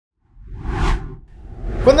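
Whoosh transition sound effect over a low rumble, peaking just before a second in and swelling again near the end.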